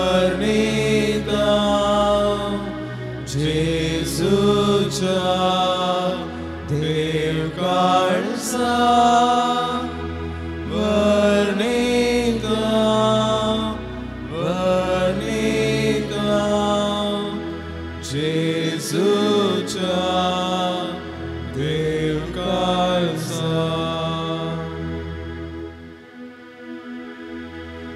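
A hymn sung with instrumental accompaniment: a voice carries the melody in phrases of a few seconds over held chords and a steady bass line.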